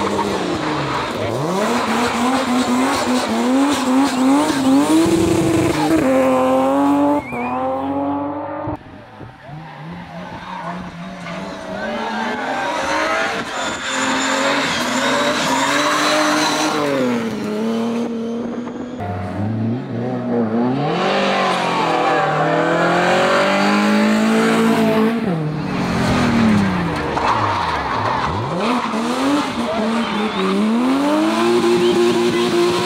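BMW 3 Series (E36) race cars passing one after another, engines revving hard with the note climbing and dropping over and over, and tyres squealing as the cars slide through hairpins. The sound breaks off abruptly a couple of times.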